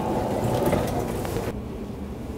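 The lowered knife drawer (drop floor) of a baler being swung out to the side by hand, a steady metal sliding noise that dies away about a second and a half in.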